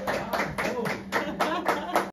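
A small group of people applauding, with evenly paced claps about four or five a second, and voices talking over the clapping.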